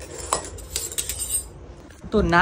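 Steel spoon and tongs clinking against each other and the tiled floor as they are handled: one sharp metallic clink about a third of a second in, then a quick cluster of clinks with a short ring.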